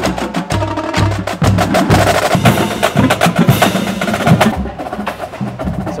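Marching band drum line warming up: snare drums playing fast, tight strokes and rolls, with bass drums hitting about twice a second in the first couple of seconds.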